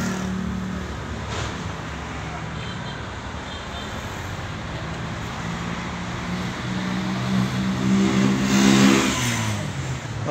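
A motor vehicle's engine running, growing louder to a peak about nine seconds in and then easing off.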